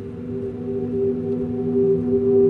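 Eerie horror background music: a few low sustained drone tones, one of them gently pulsing, slowly growing louder.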